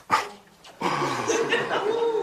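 A person's drawn-out vocal sound lasting about a second, starting a little under a second in, after a short sharp sound at the very start.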